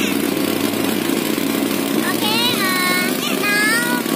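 Small river boat's engine running steadily under way. High-pitched voices call out over it from about halfway through.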